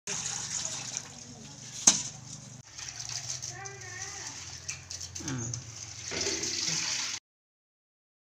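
Water sloshing and splashing in a steel bowl as live freshwater crabs are scrubbed by hand, with one sharp knock about two seconds in. It cuts off abruptly about a second before the end.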